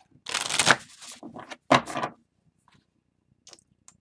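A tarot deck being riffle-shuffled in two halves: one long riffle about a third of a second in, then a second, shorter one, then a few faint card ticks.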